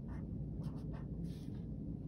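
Handwriting on notebook paper: a few short, faint strokes of a pen forming the letter R.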